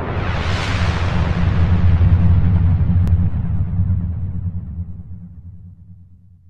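Electronic intro sound effect: a deep synthesizer rumble under a hissing sweep that sinks from high to low. It swells to its loudest about two seconds in, then fades away near the end.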